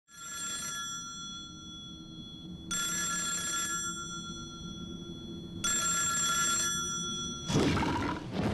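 Black rotary telephone's bell ringing three times, each ring about a second long and about three seconds apart, over a faint low hum. Near the end a louder burst of noise cuts in.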